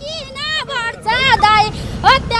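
A group of women singing a folk song together in short, high phrases, without instruments, over a low background rumble.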